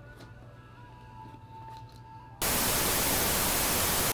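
TV static sound effect: a loud, even hiss like a television with no signal. It starts abruptly about two and a half seconds in and cuts off suddenly at the end, after faint background music.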